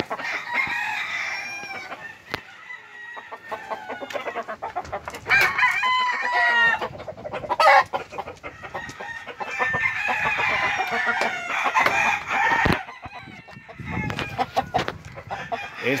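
Gamecock roosters crowing in repeated bouts about every four to five seconds, with clucking between the crows. A few sharp knocks are heard, the loudest a little past halfway.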